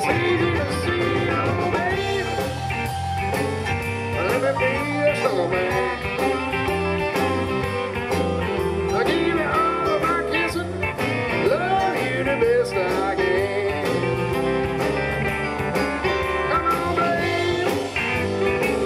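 A live blues-rock band plays steadily with electric guitar, bass, keyboards, drums and saxophone, with bending melodic lines over a continuous groove.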